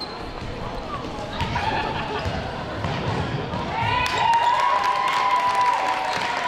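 A basketball bouncing on the hardwood floor of a sports hall during play, with voices from players and spectators. From about four seconds in, a loud, held shout from the crowd rises over the bouncing.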